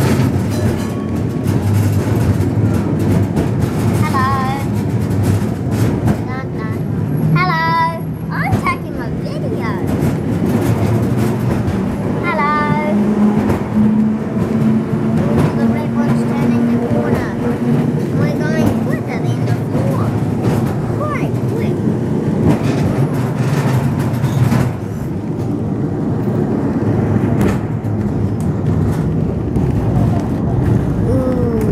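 Double-decker electric tram running along its track, with a steady low hum from the motors, rattling of the car and frequent knocks from the wheels on the rails. A steady low tone holds for several seconds in the middle.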